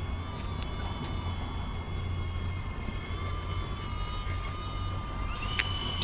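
Steady low outdoor rumble with a faint thin whine over it, and a single short click near the end.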